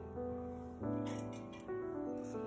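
Background instrumental music: soft sustained notes, with a new set of notes struck about every second.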